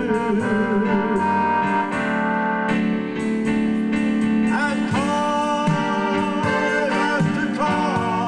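Live music, a wordless instrumental passage of a slow ballad: a sustained lead melody with vibrato and a bend upward about halfway through, over steady accompaniment.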